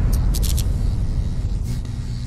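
Deep rumble fading away slowly, with a few quick high ticks over it: the sound design of an animated logo sting.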